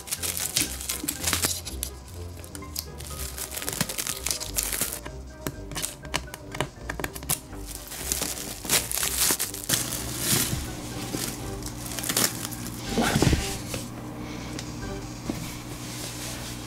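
Plastic cling wrap crinkling and crackling in many quick bursts as hands press and smooth it over the top of a glass terrarium, over background music.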